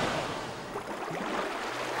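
Sea waves washing: a steady rushing noise, a little louder at the start.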